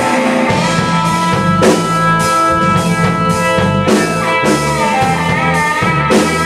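Live rock band playing: guitar over drum kit and bass, with keyboard, and crashes on the cymbals every couple of seconds.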